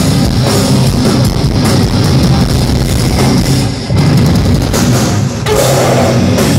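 Hardcore band playing live: distorted guitars, bass guitar and drum kit, loud and dense, with no vocals. The band drops out briefly a little before four seconds in, then comes back in.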